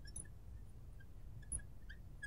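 Faint, short squeaks of a marker writing on a glass lightboard, scattered through the moment over a low room hum.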